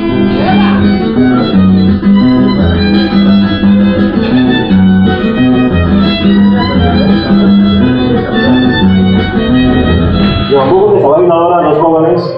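Violin and nylon-string classical guitar playing a tune together, the guitar keeping a steady rhythm of bass notes under the bowed melody. The music stops suddenly about ten and a half seconds in, and a man starts talking.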